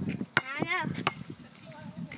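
A high-pitched voice calling out briefly, its pitch bending, with a few sharp clicks just before and after it.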